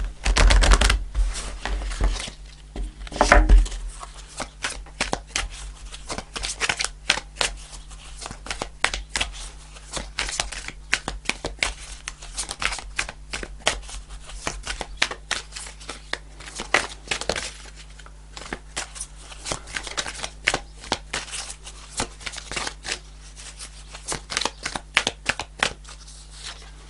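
A deck of oracle cards being shuffled by hand: a long run of quick, light clicks of card against card. A few louder knocks from handling the deck come in the first four seconds.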